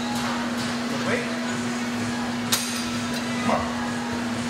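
A single sharp metal clank from the cable machine's weight stack about halfway through, over a steady low hum.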